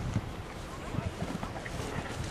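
A horse's hooves striking sand arena footing as it lands from a jump and canters away, a strong thud right at the start followed by uneven dull hoofbeats. Wind rumbles on the microphone throughout.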